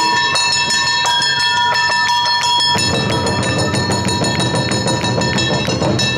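Awa-odori hayashi music: a kane hand gong struck in rapid, ringing strokes over a shinobue bamboo flute holding a high note. Deep taiko drums come in strongly about three seconds in.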